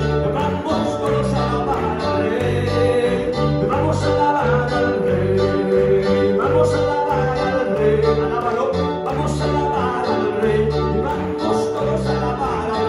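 Live worship band playing, with keyboard and guitar over a steady beat and a bass line, and voices singing along.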